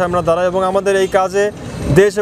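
Speech: a man talking in Bengali, with a short pause near the end and a steady low hum underneath.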